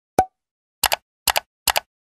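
Pop sound effects for on-screen graphics popping into view. First comes a single pop with a brief tone, then three quick double clicks about half a second apart.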